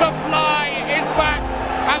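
Horse-race commentator calling the race in a high, excited voice over crowd noise, with background music continuing beneath.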